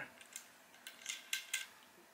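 Orvis Clearwater fly reel being fitted to a fly rod's reel seat: a few light, separate metallic clicks as the reel foot is seated and the reel seat is tightened.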